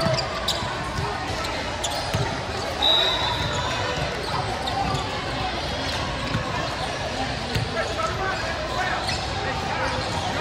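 Basketballs bouncing on a hardwood gym court amid steady, indistinct chatter from players and spectators, echoing in a large hall. A brief high squeal sounds about three seconds in.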